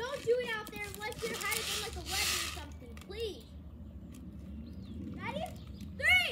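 A child's high-pitched voice making indistinct calls and sounds, with a short hiss about two seconds in.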